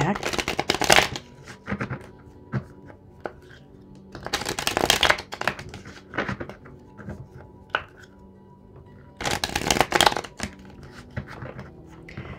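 Light Seer's Tarot deck being shuffled by hand in three bursts of card clicking, about four seconds apart, with a few single card clicks between them.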